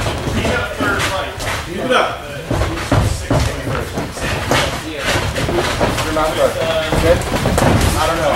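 Boxing gloves landing punches and feet moving on the ring canvas during sparring: a handful of sharp thuds spread through, with people talking over them.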